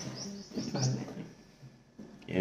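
About four short, quick, rising high chirps, like a small bird's, in the first half-second, then a low voice-like sound just under a second in, fading away toward the end.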